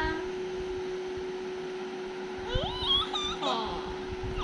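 A toddler's high, whiny, meow-like cry, rising in pitch, about a second long and starting about two and a half seconds in.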